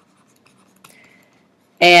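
A faint tap and brief scratching of a pen stylus on a Wacom Bamboo graphics tablet as a word is handwritten, about a second in.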